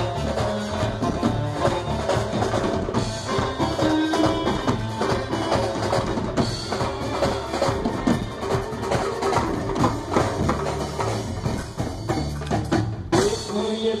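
Live dandiya band music led by its percussion: a drum kit, a dhol and stand-mounted drums beating together in a dense rhythm, with pitched melody underneath.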